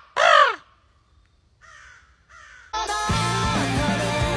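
Crow caws: a loud caw right at the start, the last of three, then two faint calls about two seconds in. Near the end, rock band music with guitar cuts in suddenly.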